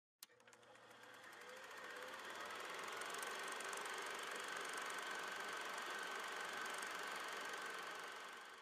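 Film projector running: a click, then fast, even clicking that swells into a steady mechanical whir with a thin high tone.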